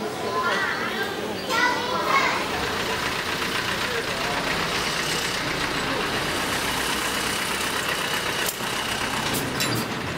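Busy street ambience: people's voices for the first couple of seconds, then a vehicle engine running steadily with a low rumble under the general street noise. There are a few sharp clicks near the end.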